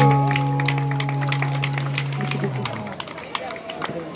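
The song's final chord, held on an amplified Chapman stick with an organ-like tone, sustaining and fading out about two and a half seconds in. Street crowd chatter follows.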